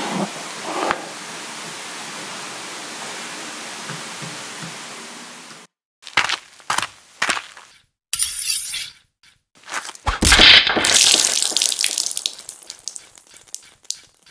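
Steady hiss for about six seconds, which then cuts off. A logo sting's sound effects follow: three sharp hits, a swish, and about ten seconds in a loud crashing, shattering impact whose crackling tail dies away.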